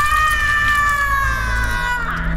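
A woman's long, high scream of pain as she is stabbed, held for about two seconds and sliding slowly down in pitch, over a low rumble.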